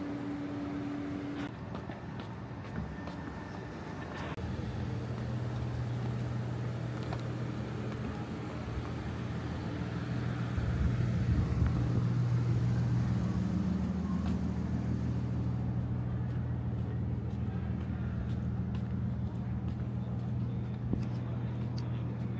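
Night street ambience dominated by a steady low hum of a motor vehicle engine running nearby. The hum starts about four seconds in and is loudest around the middle.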